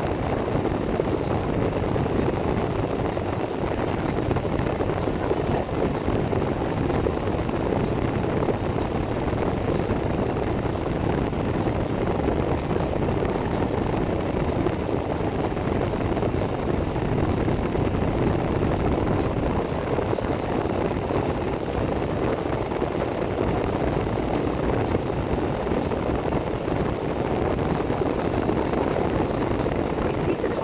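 Steady road and engine noise heard from inside a moving car's cabin, an even low rumble that doesn't change.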